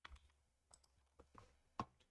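Near silence with a few faint, irregular computer mouse clicks, the loudest near the end.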